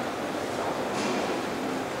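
Steady room hiss in a pause between words, an even noise with no distinct events.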